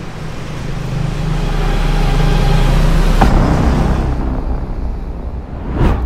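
A car's engine and tyres on a road, growing louder to a peak about halfway through and then fading, with a short sharp loud sound just before the end.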